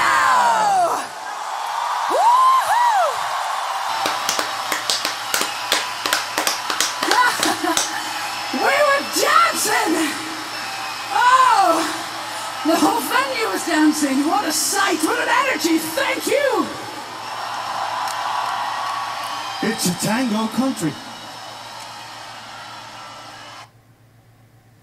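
Live concert audience cheering and clapping after a song ends, with shouts and whoops rising above the crowd noise. It fades out near the end.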